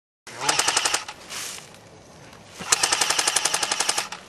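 Airsoft rifle firing on full auto in two bursts of rapid, evenly spaced shots, about fifteen a second: a short burst about half a second in and a longer one of over a second near the end.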